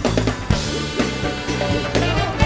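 A live funk and soul band playing: drum kit hits about twice a second over a steady bass line, with held higher instrument notes.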